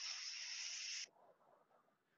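A person drawing an audible breath in, a soft hissing inhale that lasts about a second, as a guided deep breath in.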